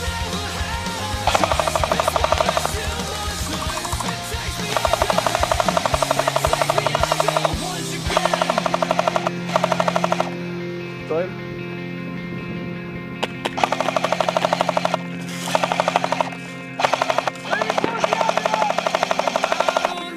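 Airsoft light machine gun firing a string of full-auto bursts, some long and some short, over rock music playing underneath.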